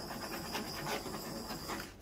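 Handheld butane torch burning with a steady hiss as its flame is passed over freshly poured epoxy resin in a coaster mould, cutting off shortly before the end.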